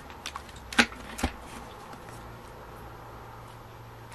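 Handling of a ring-binder cash wallet with plastic pockets: a few sharp clicks and taps in the first second and a half, the loudest a little under a second in, then only a faint low hum.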